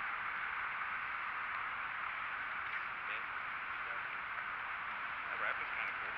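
Steady outdoor background hiss with faint, distant voices now and then.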